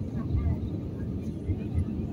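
Jet airliner cabin noise heard from a window seat: the steady, deep rumble of the engines and airflow, with no sudden events.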